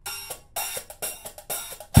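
Small hi-hat of a DXP junior five-piece drum kit played with sticks: a quick run of crisp strikes, showing the hi-hat works, with a heavier drum hit at the very end.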